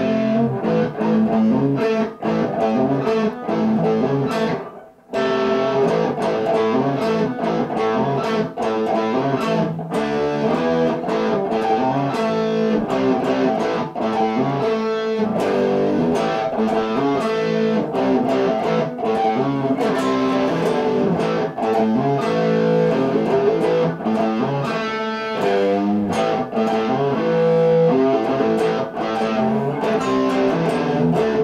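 Electric guitar played loud through a tube amplifier at a saturated setting, tamed by a power attenuator before the speaker cabinet: a continuous run of overdriven notes and riffs, with a short break about five seconds in.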